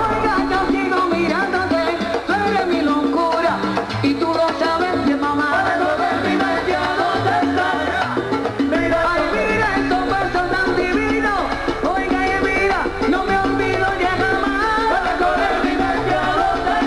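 A salsa band playing live, with percussion and trumpets, at a steady full level.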